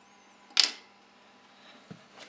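A single sharp plastic click about half a second in, from the tonearm of a Soviet Yugdon radiogram's turntable being handled, followed near the end by a soft low thump.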